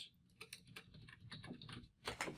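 Computer keyboard typing: a quick run of faint key clicks starting about half a second in, as a single word is typed.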